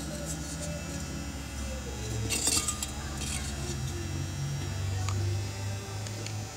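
Light metallic clinks and knocks from a used Husqvarna 372 dual-port chainsaw muffler, a sheet-metal part, being handled. The loudest clatter comes about two and a half seconds in, with a few softer taps around it, over a steady low hum.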